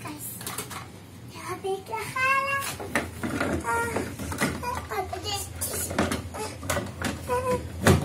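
Young children's voices in short bursts of chatter, with clicks and knocks of plastic toy kitchen parts being handled.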